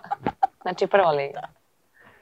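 Chickens clucking in short repeated notes, stopping about a second and a half in.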